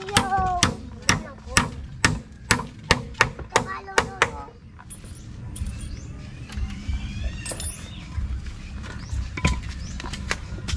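Hammer driving nails into a wooden bed frame: about ten sharp strikes at roughly two a second, stopping about four seconds in.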